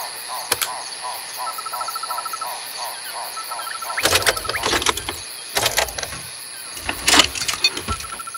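Crickets and other night insects trilling steadily, with a regular chirp repeating a few times a second in the first half. A few short noisy bursts break in around the middle and near the end, the loudest about seven seconds in.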